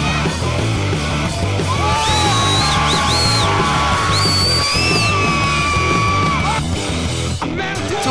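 Loud rock music over a sound system with a crowd yelling and cheering; a long held voice rises over it through the middle, and the sound drops out abruptly near the end.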